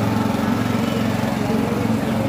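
A small engine running steadily at an even speed.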